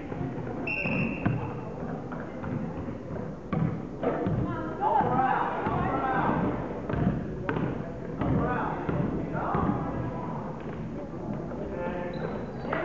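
A basketball bouncing on a hardwood gym floor as it is dribbled, with scattered thuds of play. Around it are the voices of spectators and players in the hall, and a short high whistle blast about a second in.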